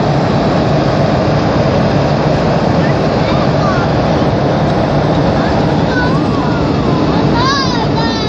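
Loud, steady roar of jet engines and rushing air heard inside an airliner cabin. A few faint wavering high tones rise and fall near the end.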